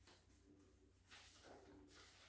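Near silence, then a faint rustle of loose sheet-music pages being shuffled by hand from about a second in.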